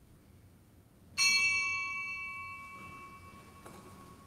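A small bell struck once, ringing out with a clear high tone and shimmering overtones that die away slowly over the following seconds. This is the bell rung to signal the start of Mass.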